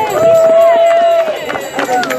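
A voice holding one long, steady drawn-out sound for over a second, followed by brief scattered talk from the small crowd.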